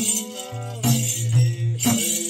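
Bhailo blessing song: voices singing over a sustained low drone, with a jingling percussion stroke about once a second.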